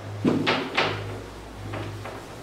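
Whiteboard eraser wiping marker off a whiteboard in quick rubbing strokes: two strong ones in the first second and a fainter one near the end.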